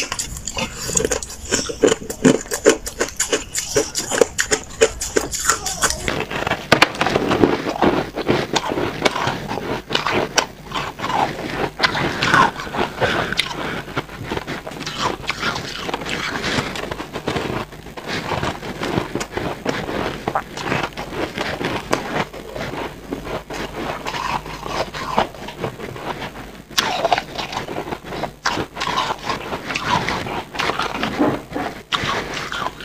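Close-up crunching of white, frosty ice being bitten and chewed, a dense run of crisp crackles and snaps. About six seconds in the sound changes as a new clip begins, with bites taken from a large block of white ice.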